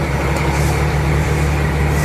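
Heavy truck's diesel engine running steadily, heard from inside the cab as a low, even drone.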